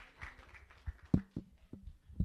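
The last scattered claps of applause dying away, then a few separate dull knocks and thumps as people get up from auditorium seats and move about, the loudest a little over a second in.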